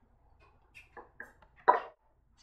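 A few short knocks and taps of small plastic cups handled on a kitchen countertop, the loudest one near the end.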